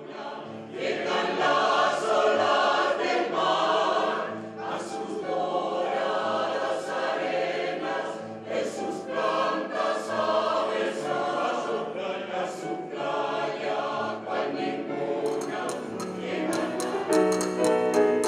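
A choir singing sustained chords, coming in about half a second in. A fast rhythmic tapping joins near the end.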